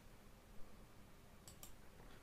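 Near silence broken by a few faint computer-mouse clicks, one about half a second in and a couple more around one and a half seconds in, as slides are switched.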